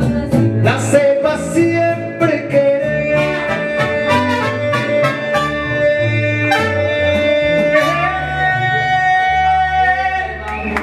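Mariachi band playing: strummed guitars keep an even rhythm over a bass line while a long melody note is held through the middle.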